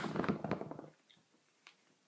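A pause in speech: the last of the voice fades out in the first second among a few faint clicks, then near silence with one more faint tick.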